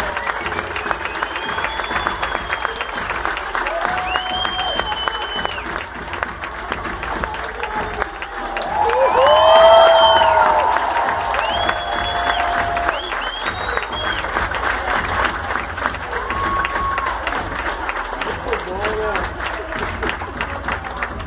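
Theatre audience applauding, with scattered high whoops and cheers over the clapping; the cheering swells to its loudest about halfway through.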